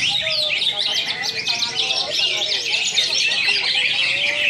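Many caged green leafbirds (cucak hijau) singing at once. Their songs overlap into a dense, continuous chatter of quick chirps and short whistles.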